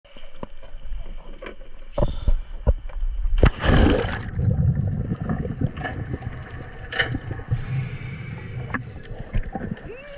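Dive gear knocking and clattering on a boat deck, then a loud splash about three and a half seconds in as a diver goes into the sea. After the splash comes muffled underwater churning and bubbling.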